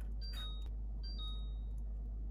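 Refrigerator's electronic beep sounding twice, each a short two-note chirp stepping down in pitch, about a second apart, typical of a door-open alarm while the freezer drawer stands open.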